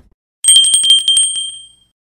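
Ringing bell sound effect: a fast trill of bell strikes that begins about half a second in and fades out before the end.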